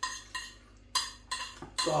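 Cutlery tapping and scraping against a dish as curry and rice are scooped up, a quick run of sharp clicks about three a second.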